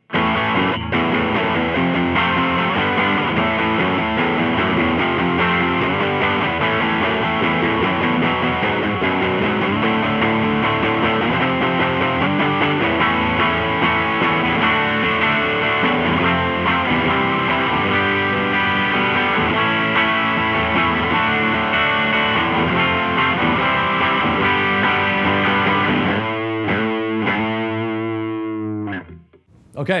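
Electric guitar played through a ProTone Dead Horse Overdrive pedal into a Supro Royal Reverb amp: continuous overdriven chords and lines, thinning near the end to a few ringing chords that die away.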